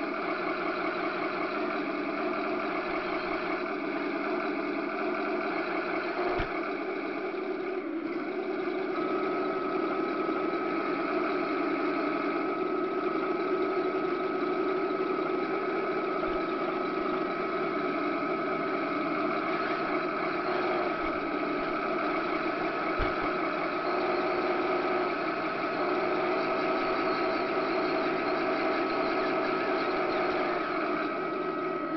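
A 1/16 scale radio-controlled tank driving, heard close up from on board: a steady mechanical drone from the tank, with a steady high whine joining about nine seconds in and a few faint knocks.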